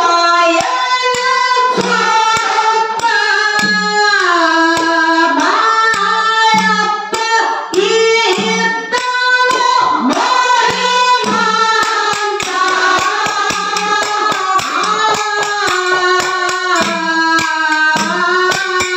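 A young woman singing a Kannada dollu folk song (dollina pada) through a microphone and PA, her voice gliding between long held notes, over a steady beat of sharp percussion strikes.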